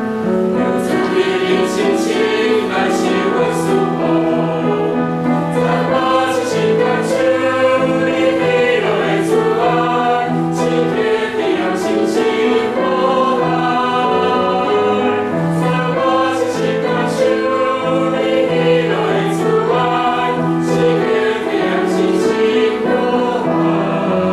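Mixed choir of young men and women singing a hymn together, holding many long notes.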